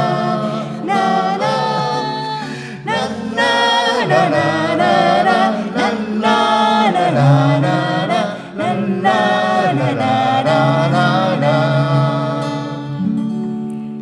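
Voices singing a wordless 'la la la' melody together, led by a woman, with a strummed acoustic guitar underneath. The singing stops shortly before the end.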